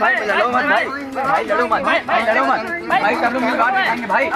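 Loud, overlapping chatter of several young men's voices talking over one another.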